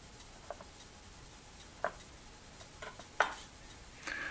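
Kitchen knife slicing an onion on a wooden cutting board: a few sharp taps of the blade hitting the board, irregularly spaced.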